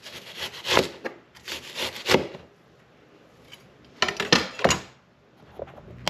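Chef's knife slicing a red onion into thin strips on a plastic cutting board: quick strokes through the onion onto the board for about two seconds, a pause, then another run of strokes about four seconds in.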